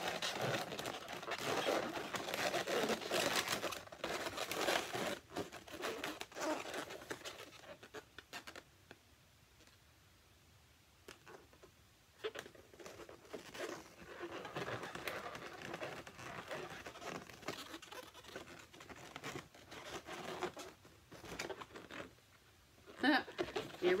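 Latex twisting balloons rubbing, squeaking and crinkling as they are handled and twisted, with a quiet pause of a few seconds in the middle.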